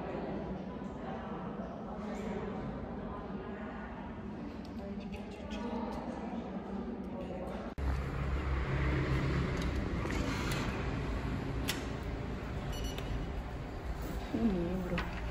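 Indistinct chatter of many people in a crowded room, no single voice standing out. About eight seconds in it cuts abruptly to a louder low rumble with a few sharp clicks.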